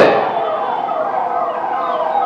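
A pause between phrases of a man's speech over a public-address system, with the loudspeaker echo of his voice ringing on faintly through the gap.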